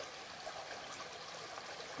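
Shallow stream running over rocks and boulders: a steady, even rush of water.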